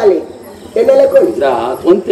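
A man's voice on stage, drawn out for about a second with a wavering, sliding pitch, starting under a second in after a short pause.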